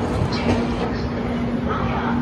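Indian Railways passenger coaches rolling past a platform: a steady low rumble of wheels on rail with a held low hum and a few knocks over rail joints.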